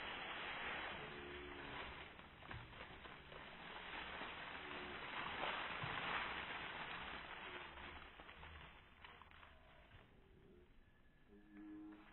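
Dry fallen leaves rustling and crackling as armfuls are tossed into the air and fall back, in two bursts: one at the start and a louder one about five to seven seconds in.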